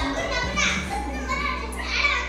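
Children's high-pitched voices calling out excitedly as they play together.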